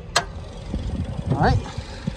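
A single sharp metallic click as the bonnet latch of a Nissan Grand Livina is released and the hood is lifted. Under it, the car's 1.8-litre four-cylinder engine idles with a low, steady rumble.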